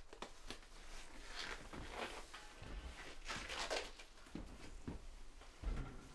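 Faint rustling and soft handling noises, with a few light clicks, as people move about a quiet room.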